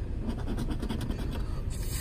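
Plastic scratcher scraping the latex coating off a paper scratch-off lottery ticket in rapid back-and-forth strokes.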